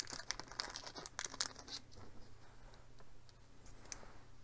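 Hands handling small plastic model parts and tools: a quick run of light clicks and rustles in the first two seconds, then only a few faint ticks.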